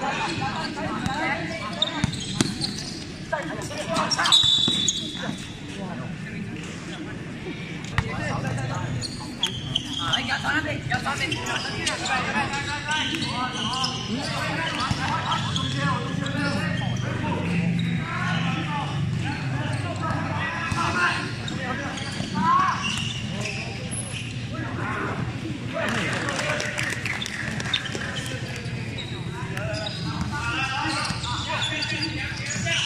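A basketball bouncing on a hard court during a game, with several people talking and calling out throughout.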